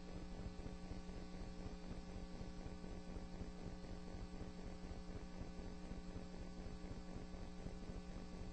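Steady electrical mains hum with a faint hiss on the courtroom's audio feed, with no voices or events.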